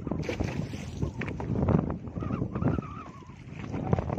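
Water splashing and sloshing against the side of a small fishing boat as a hooked tuna is hauled up alongside on a handline, with wind buffeting the microphone.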